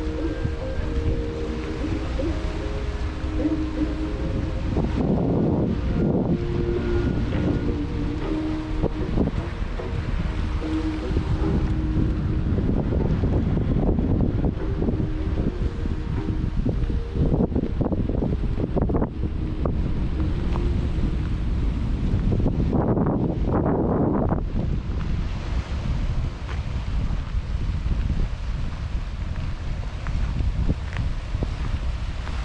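Wind buffeting the microphone with a steady low rumble, over sea waves washing against the shore that surge up several times, loudest a few seconds before the end.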